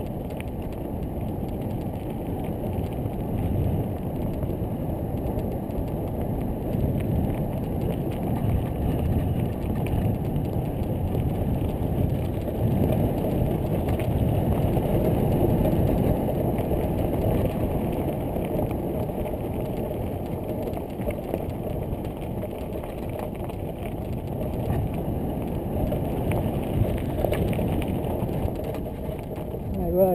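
Mountain bike riding over a gravel track: tyres crunching on loose stones and the bike rattling over bumps, under a continuous rumble of wind on the microphone that swells and eases with speed.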